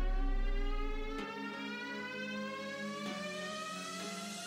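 Background music: a held electronic tone that rises slowly in pitch, with a deep bass note that drops out about a second in.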